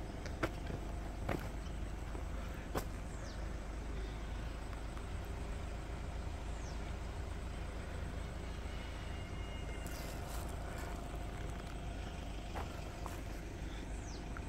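Quiet outdoor ambience: a steady low rumble with a hiss over it, a few faint clicks, and several faint, high, falling whistles scattered through.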